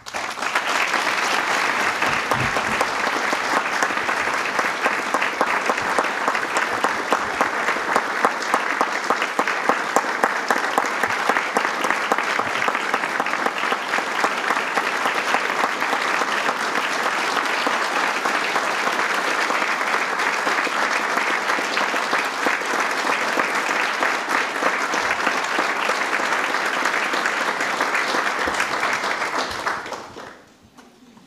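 Audience applauding steadily for about thirty seconds, the clapping starting all at once and dying away at the end.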